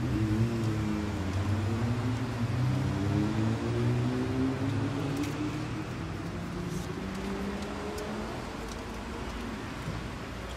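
Passenger van's engine heard from inside the cabin, its pitch climbing slowly and steadily as the van accelerates, over a low road rumble.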